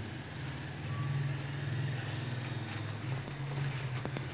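Steady low hum of an idling engine, with a fine even pulse and no change in pitch.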